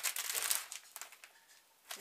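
Plastic bag of breadsticks crinkling as it is handled, a dense crackle that dies away after about a second.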